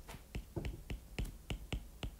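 Stylus tip tapping on an iPad's glass screen while handwriting. It makes a string of light, sharp clicks, about three to four a second.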